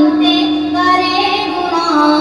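A single voice singing a naat, an Urdu devotional poem in praise of the Prophet, in a high register, drawing out long held notes.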